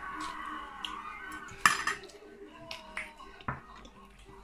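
A metal fork clinking against a dinner plate while eating, with one sharp clink about one and a half seconds in and a lighter one near the end.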